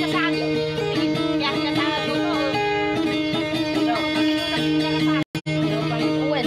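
Guitar playing a fast plucked pattern over steady held low notes. The sound cuts out twice for an instant near the end.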